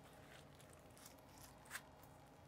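Near silence: room tone, with faint ticks and one short click near the end as a long sushi knife slices through a block of ahi tuna on a cutting board.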